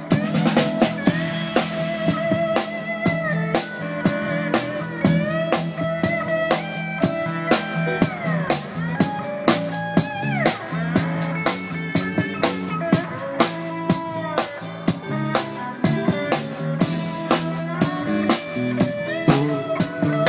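Live band playing an instrumental groove: a drum kit keeps a steady beat with rimshots while an electric guitar plays a lead with bent and sliding notes.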